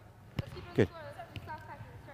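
A soccer ball kicked on artificial turf: one sharp pass strike about half a second in, with a fainter touch later.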